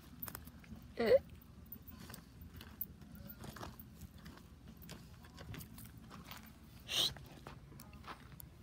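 A Doberman digging in dry, stony dirt: its front paws scrape and scratch the soil in quick, irregular strokes. Two short, louder sounds stand out, one about a second in and one near the end.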